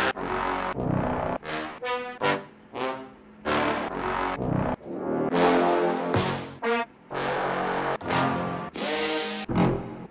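Sampled brass horn stabs previewed one after another: more than a dozen short horn hits of differing pitch and tone, each starting sharply and some cut off as the next begins.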